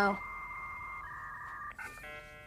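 Dial-up computer modem tones: a steady high whistle over a lower buzzing tone, which switch to a different pitch about a second in, then a short chirp near the end as the modem connects.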